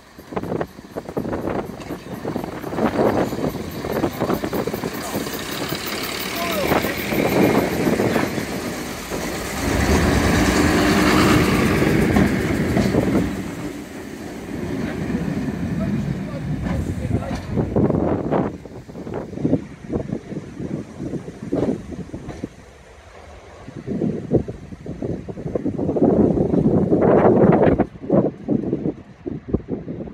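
First-generation diesel multiple unit's underfloor diesel engines running as the train moves off and draws away, swelling louder twice, with a brief lull between.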